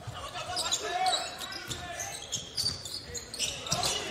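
Basketball being dribbled on a hardwood court, with repeated thuds and short high sneaker squeaks, over faint arena voices.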